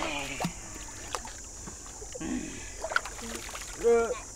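Water sloshing and lapping in a shallow pool as people move about in it, with a few small splashes. A short vocal sound comes at the very end.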